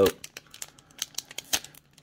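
Foil wrapper of a Pokémon trading card booster pack crinkling and being torn open by hand, a scatter of irregular sharp crackles, the loudest about one and a half seconds in.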